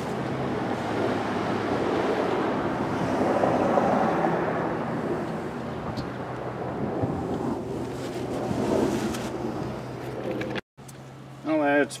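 Warm engine oil draining from a snow blower engine's drain into a plastic bucket: a steady pouring splash that swells about four seconds in, eases off, then cuts off suddenly near the end.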